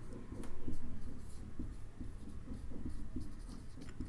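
Marker pen writing on a whiteboard, a run of faint short strokes as a word is written out.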